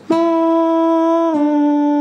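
A man's voice singing a single held note in a high register, demonstrating the fourth-voice harmony line of a folk polka, an octave above the third voice. The pitch holds steady, then steps down a note about halfway through.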